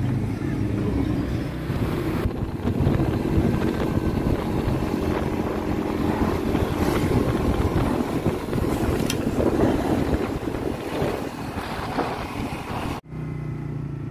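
Wind buffeting the microphone over a motorbike engine running steadily while riding along a road. It cuts off abruptly about a second before the end, giving way to a lower, steady engine hum.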